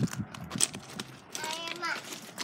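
Hurried footsteps crunching on landscaping rock, a quick run of short knocks, with a brief high vocal sound about a second and a half in.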